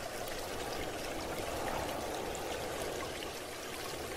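Steady trickling, flowing water, with faint droplet-like ticks over it.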